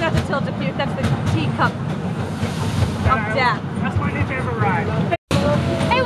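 Voices talking over the steady low rumble of a small amusement-park train ride running. The sound drops out completely for a moment about five seconds in.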